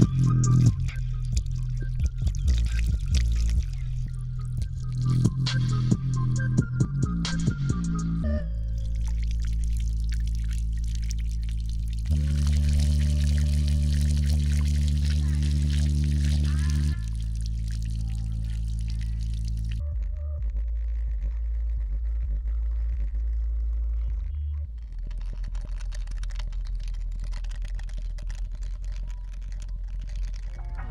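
A SVEN PS-95 portable Bluetooth speaker playing bass-heavy music while submerged under a shallow layer of water, its driver throwing the water up in splashing jets. For the first several seconds there is a pulsing beat; after that come long, steady, very deep bass notes that change every few seconds, loudest around the middle.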